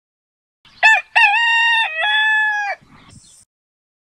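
A rooster crowing once, a full cock-a-doodle-doo: a short opening note about a second in, then a long held call that dips in pitch partway and ends just before the three-second mark.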